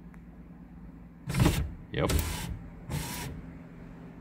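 Newly replaced power window motor in a Fox-body Ford's passenger door running and raising the glass, starting a little over a second in and going on in uneven loud bursts until about three and a half seconds in; the motor is working.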